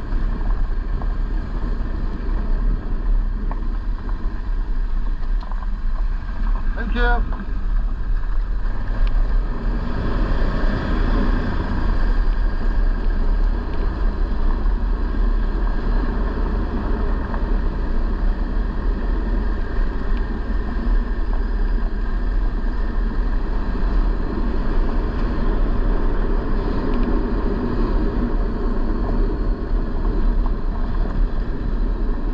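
A vehicle running steadily while riding along, its engine rumble mixed with road and wind noise on the microphone. A brief run of light ticks comes about seven seconds in.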